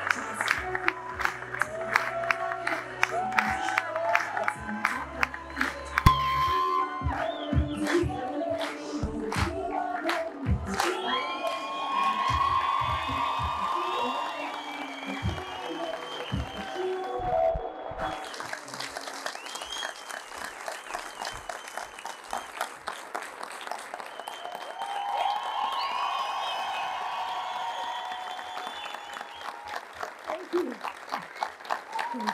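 Music plays while an audience applauds and cheers. Sharp individual claps stand out over roughly the first ten seconds, and the clapping then blends into a steady wash of applause under the music.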